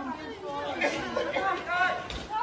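Several people's voices talking over one another in a chatter of speech.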